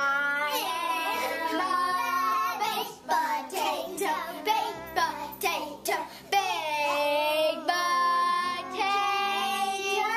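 A child singing along to music, the voice sliding up and down in pitch over steady held backing notes.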